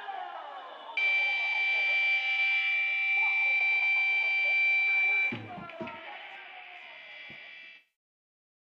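A loud, steady, high buzzing electronic tone comes in about a second in, after a short falling sweep, and holds for about four seconds. It then drops to a quieter sustained tone with a few low thumps and cuts off suddenly near the end, as the track's audio ends.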